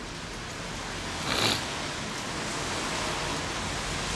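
Steady hiss of background noise with no words, growing slightly louder, and a short louder rush of noise about one and a half seconds in.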